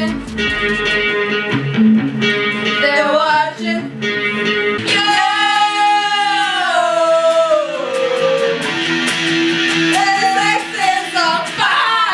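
A voice singing over guitar accompaniment, with one long note sliding downward about five seconds in.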